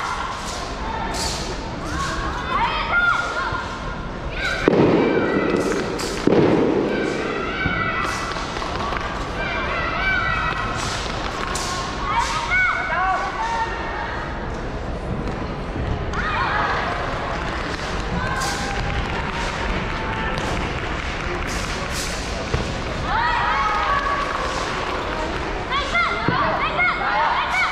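A wooden wushu staff striking and slapping the carpeted competition floor, and a performer's feet stamping and landing, in repeated sharp impacts. Two heavier thuds come about five and six seconds in. People's voices chatter throughout.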